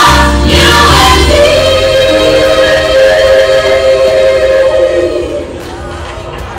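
Gospel song with choir singing, holding one long note that ends about five seconds in, after which the music falls much quieter.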